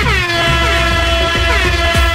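DJ mix music with a loud horn blast laid over it, a sustained horn tone that slides down in pitch as it starts and then holds, over a steady kick-drum beat.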